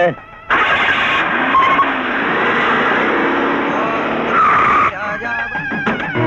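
Cars driving in and skidding to a stop, a loud rushing noise of engines and tyres that ends in a short tyre squeal just before the five-second mark.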